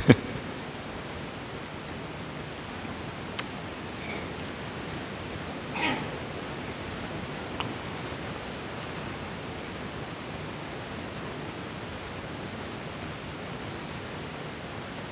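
Steady hiss of background noise, with a faint click a few seconds in, a brief soft sound about six seconds in, and another small click soon after.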